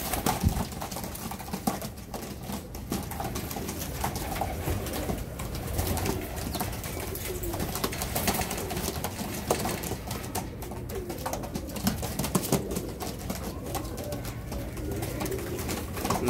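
Several domestic pigeons cooing in a small loft, with low, wavering coos throughout. There are scattered light clicks and scuffles from the birds moving, and a wing flap just after the start.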